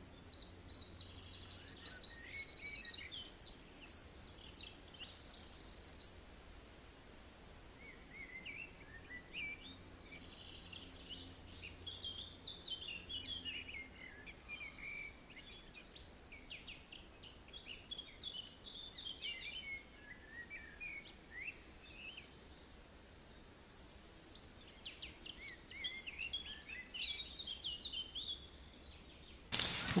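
Small birds chirping and singing, faint, in short high calls and trills that come in clusters with brief lulls between.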